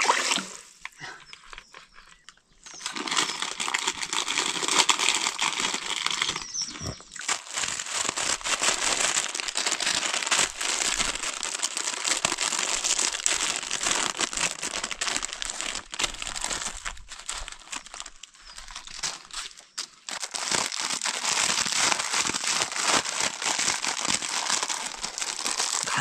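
Plastic Wai Wai instant-noodle packets crinkling and rustling as they are handled, almost without pause from about three seconds in, easing off briefly past the middle. A short splash of water being poured is heard at the very start.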